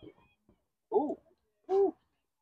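Two short voice calls, like shouted 'hoo' sounds from someone at the field, each a quarter second or so long and under a second apart, with quiet between.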